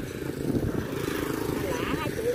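Indistinct voices talking over a steady low engine rumble.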